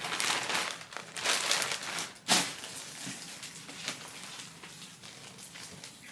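Rustling and crinkling of clothing being handled, busiest in the first two seconds, with a sharp click a little over two seconds in, then quieter handling.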